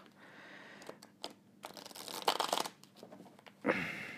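Tarot cards being handled and shuffled by hand: soft, irregular rustling and flicking of card stock, loudest about two seconds in.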